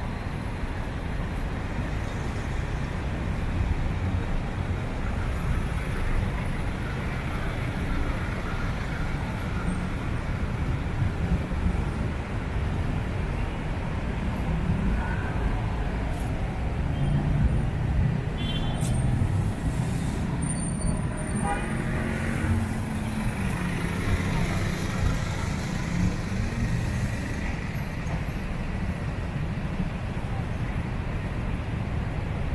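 City street traffic: a steady rumble of cars and vans passing on the road alongside.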